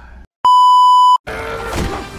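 Censor bleep: a single steady high beep, a little under a second long, that starts and stops abruptly and is much louder than the talk around it.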